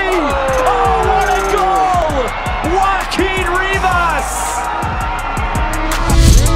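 An excited commentator's voice in one long, falling shout, then more excited calling, over backing music with a steady beat. Louder music with drums and guitar comes in at the end.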